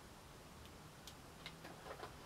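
Near silence with a few faint, light clicks in the second half, from small craft tools (a hot glue gun and scissors) being handled and set down.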